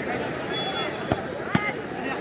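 Crowd of spectators murmuring during a penalty kick, with a sharp thud of the football being struck about one and a half seconds in and a fainter knock just before it.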